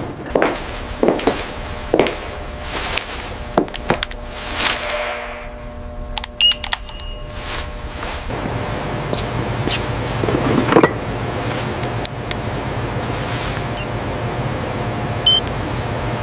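Background ambience and music with several sweeping whooshes in the first half and two short high electronic beeps, one about six and a half seconds in and one near the end, over a low steady hum that grows stronger in the second half.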